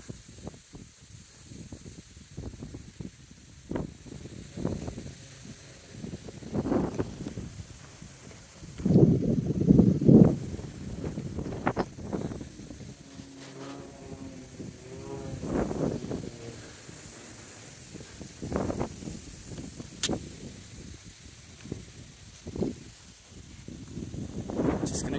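Gusty wind buffeting the microphone in irregular low rushes, strongest about nine to ten seconds in. There is a short hum of several steady tones around the middle and a single click near the end.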